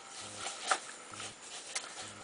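A pen stirring damp tarantula substrate in a plastic tub, which is being mixed with water to moisten it. A faint scraping rustle runs under two light clicks, one a little under a second in and one near the end.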